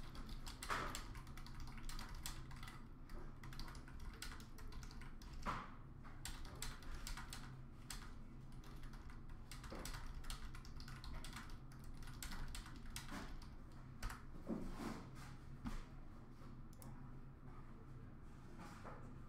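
Typing on a computer keyboard: quick, irregular key clicks, over a low steady hum.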